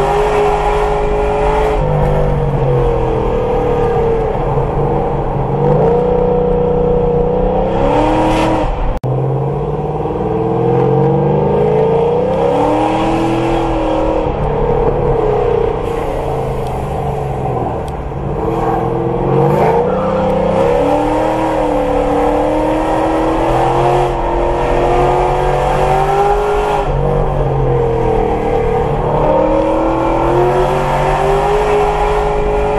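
Car engine heard from inside the cabin while driving at about 45–55 mph on a winding road, its pitch rising and falling as the throttle opens and closes through the curves. A sharp click with a momentary drop in sound comes about nine seconds in.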